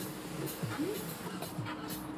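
Faint music playing inside a moving car's cabin over a low, steady drone, with soft low thuds at uneven spacing.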